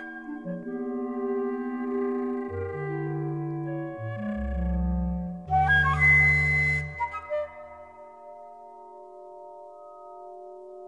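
Contemporary music for flute and electronic tape: layered sustained tones, joined by deep low electronic tones about two and a half seconds in. About halfway through comes a burst of airy, hissing noise. The deep tones then fall away, leaving quieter held high tones.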